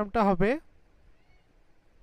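A man's voice finishes a drawn-out word with a falling pitch in the first half second. Then there is near silence, just room tone, with one faint, brief high chirp about midway.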